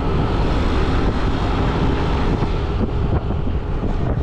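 Wind buffeting the microphone on a moving motorbike, over the steady engine and road noise of the ride.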